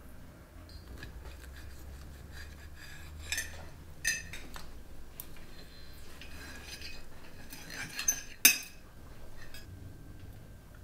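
Knives and forks clinking and scraping on plates as pancakes are cut up, in scattered light strokes with one sharp clink late on.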